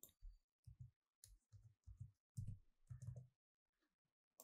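Faint computer keyboard keystrokes: a quick, irregular run of about ten soft clicks as a short piece of text is typed.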